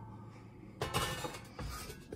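A steel winch-mount skid plate being handled and shifted on a hard surface, with a brief scrape about a second in and a second, shorter one near the end.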